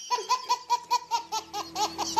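A baby laughing hard in a quick run of short laughs, about five a second.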